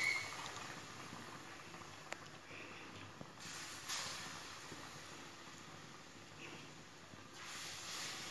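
Banana bondas deep-frying in hot oil: a faint, steady sizzle, with a loud short burst right at the start and a swell about four seconds in.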